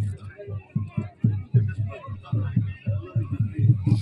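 Large bully kutta dog panting heavily: quick, low, rhythmic breaths, about four or five a second.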